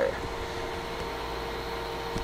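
Steady hum of a Mohawk 10 HF linear amplifier running powered up with no load, its high-voltage supply at about 3.1 kV, with a faint steady tone in the hum. It is holding up, with no pops or arcs.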